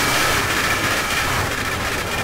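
Loud, dense, heavily distorted noise that fills the whole range from deep bass to high hiss, easing off a little in the second half.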